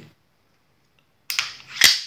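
Two sharp metallic clicks from a Stoeger Cougar 9 mm pistol being worked by hand, about half a second apart, the second louder.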